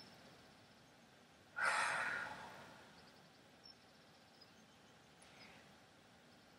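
A woman's long audible sigh, a soft breathy exhale that starts about one and a half seconds in and fades out over about a second, in an otherwise quiet room.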